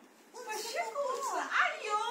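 A toddler's voice babbling with no clear words, high-pitched and wavering up and down, starting about half a second in.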